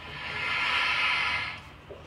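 A man's long breath out, a sigh-like rush of air that swells and fades over about a second and a half, heard through a TV speaker.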